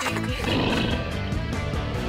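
Cartoon background music with a rough, beastly roar sound effect that swells up about half a second in and fades after a second or so.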